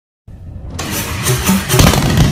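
Motorcycle engine starting up and running, mixed with music, as an intro sound effect. It comes in about a quarter second in and builds in loudness.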